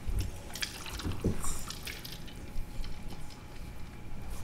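Meeting-room background noise: scattered light clicks and knocks with a couple of low thumps, and a brief voice-like sound about a second in.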